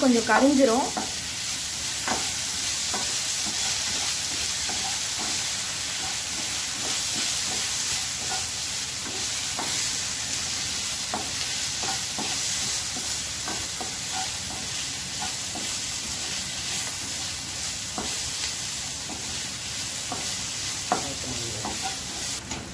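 Chopped garlic and ginger-garlic paste frying in oil in a pan, a steady sizzle, with a wooden spatula stirring and scraping against the pan now and then.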